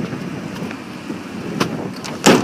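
Wind and handling noise on a hand-held phone microphone as it is swung around, with one sharp click about one and a half seconds in.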